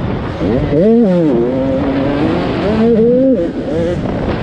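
85cc two-stroke motocross bike engine revving hard under the rider, its pitch climbing steeply about a second in, dropping back, holding, then rising and dipping again near the end with throttle and gear changes. Wind rumble on the helmet-mounted camera sits underneath.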